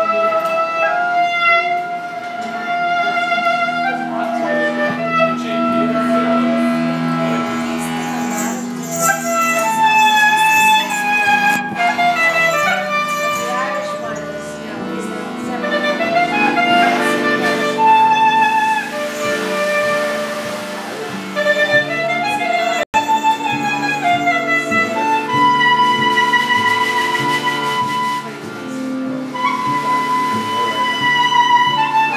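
Live klezmer band playing, the clarinet carrying the melody over upright bass and the rest of the band. The sound cuts out for an instant about 23 seconds in.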